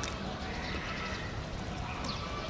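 Giant panda chewing a mouthful of bamboo leaves, with crisp crunching and leaf rustling: one sharp crunch at the start and another at the end.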